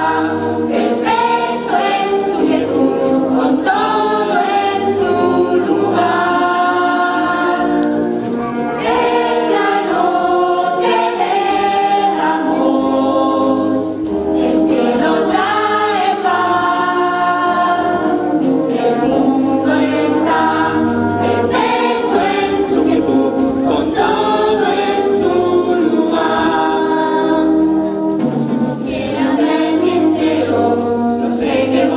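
A large chorus of children and young people singing together over live band accompaniment, loud and continuous.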